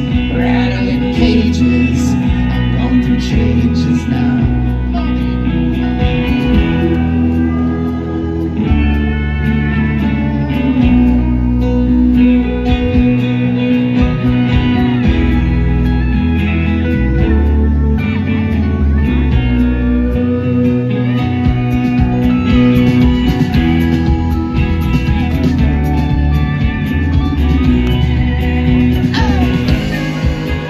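Live band playing an instrumental passage of a folk-rock song: strummed acoustic guitar over drums, bass and keyboard, with gliding lead lines above.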